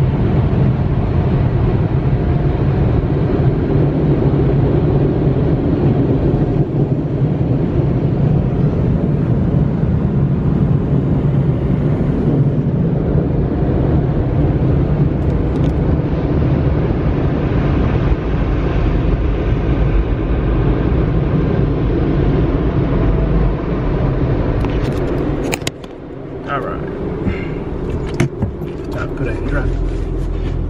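Automatic car wash blower dryers running loud and steady with a low hum, heard from inside the car; the noise drops off sharply about 25 seconds in, leaving quieter sound with a few clicks.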